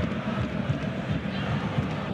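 Football stadium crowd noise: a steady, low rumble from the stands with no single sound standing out.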